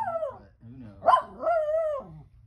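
A miniature schnauzer giving two drawn-out, wavering whining barks, one at the start and another about a second in.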